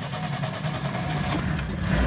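VAZ-2105 Zhiguli's 1.5-litre carburetted four-cylinder engine being started, warm and without the choke: the starter cranks and the engine catches and runs.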